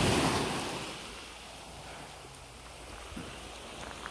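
Small waves washing on a calm sea shore, with wind. A louder swell of wash at the start fades within about a second to a steady, quieter hiss.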